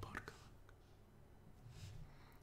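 Near silence: room tone, with a man's faint breathy sounds just after the start and again near the end.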